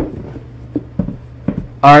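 A few faint knocks and scrapes of a tight-fitting cardboard box lid being worked loose and lifted off its base.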